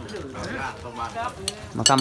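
Meal-time rustling and light clinks of dishes and utensils from people eating on the floor, under quiet murmured voices, with a few sharp clicks about one and a half seconds in. A voice starts calling 'ma khwan' (come, soul) right at the end.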